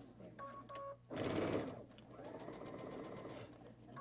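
Electric sewing machine stitching quilt-block fabric, starting with a loud burst of fast stitching a second in, then running steadily for a couple of seconds before stopping. Two short beeps come just before the stitching starts.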